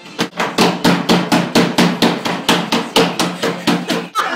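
Fast, even banging on a door, about five blows a second, each with a short low boom.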